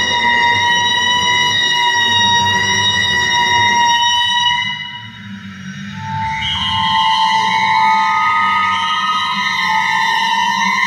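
Contemporary chamber music with live electronics: long held high tones with bright overtones over a low rumble. The tones fade out about halfway through, and a new cluster of held tones enters about a second later, its lowest note edging slightly upward.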